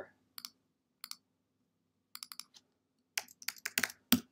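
Computer mouse and keyboard clicks: two quick double clicks, a few scattered clicks, then a short fast run of typing on the keyboard near the end.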